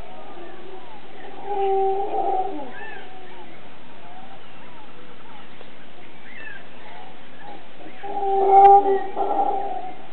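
Mantled howler monkey calling in two loud bouts, about a second in and again near the end, over the steady chirping of many birds.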